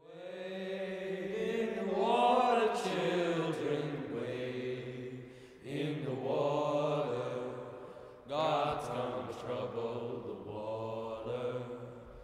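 Small a cappella group of teenage boys singing sustained chords in close harmony, in three long phrases with brief breaks about six and eight seconds in.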